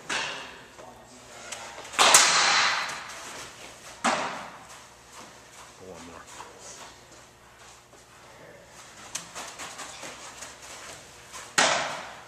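Sharp impacts of a baseball during pitching and fielding drills, ringing in a hard-walled indoor room. There are four: one at the start, the loudest about two seconds in, another at four seconds and a last one near the end.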